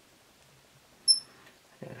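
One short, loud, high-pitched squeak or chirp about a second in, against near silence.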